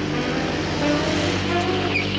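A car engine running loudly and steadily, with a fast low pulsing.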